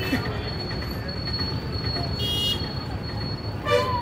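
Busy roadside market ambience: a steady low traffic rumble with background voices, a brief vehicle horn toot about two seconds in, and a louder short sound near the end.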